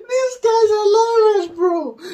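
A man laughing hard in a high, squealing pitch, in a few long drawn-out notes; the last one falls away near the end.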